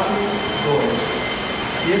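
Steady mechanical noise with several constant high-pitched whining tones.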